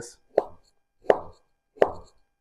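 A knife slicing down through soft braised red cabbage and knocking on a cutting board: three strokes, about two-thirds of a second apart.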